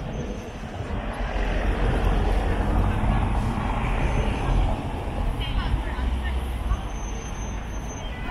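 Slow city traffic close by: car engines running in a queue, a steady low rumble that swells in the middle.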